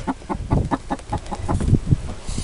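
Hens clucking in a rapid, irregular run of short clucks.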